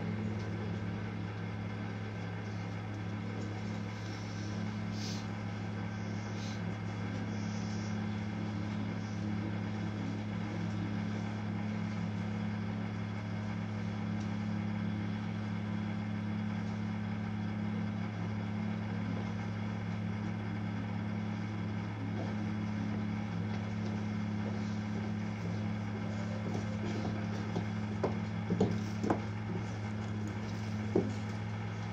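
Steady low electrical hum inside a standing Seibu train car, set 2085F, with no running noise, and a few light clicks near the end.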